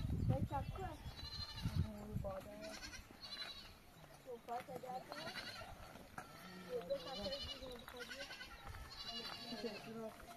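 Goats and sheep bleating repeatedly, about six or seven calls that waver in pitch, with a few low thumps in the first two seconds.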